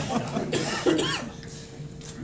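A person coughing in a small press room, one sharp cough about half a second in.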